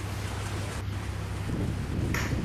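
Wind buffeting the microphone over the wash of a choppy sea: a steady low rumble with an even hiss.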